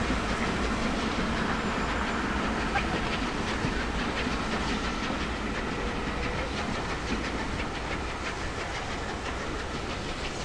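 Railway carriages rolling across a metal arch bridge, their wheels clicking steadily over the rail joints, slowly fading as the train moves away.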